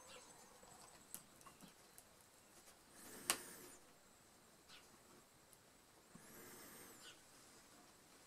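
Near silence with faint handling sounds as a thin metal tool presses grille cloth onto a glued wooden board: a small click about a second in, a sharp click about three seconds in, and a faint brief rustle about six seconds in.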